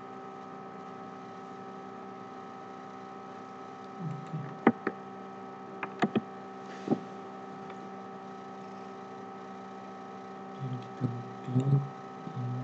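Steady electrical hum made of several fixed tones, with a few sharp clicks in the middle and some brief low sounds near the end.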